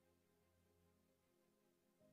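Near silence: only a very faint, steady background tone.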